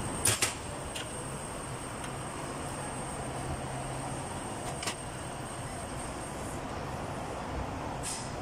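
Steady workshop background noise with a low hum, broken by a few sharp clicks: two close together just after the start, one about a second in, and one about five seconds in.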